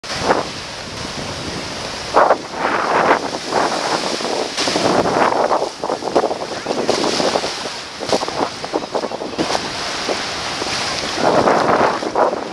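Ocean surf and sea water sloshing and splashing around a camera held at the water's surface, coming in irregular surges every second or so.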